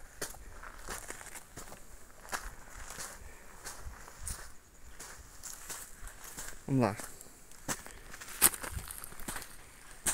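Footsteps of a person walking along a dry, stony dirt trail, shoes crunching on pebbles, loose earth and dry leaf litter in an uneven rhythm.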